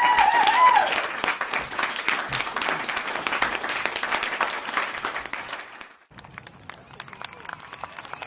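Audience applauding in a hall, with a voice over the first second. The applause drops off sharply about six seconds in and goes on more faintly.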